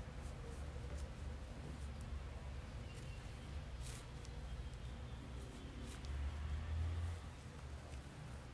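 Faint handling sounds of crochet: a few soft clicks and rustles of a metal crochet hook working cotton string, over a low steady hum.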